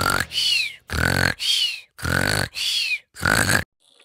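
Seven short vocal bursts in a quick paired rhythm, each with a falling high squeak, stopping just before the end.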